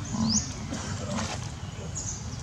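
Long-tailed macaques calling: a short, rough run of squeals near the middle, with a brief rising chirp just before it.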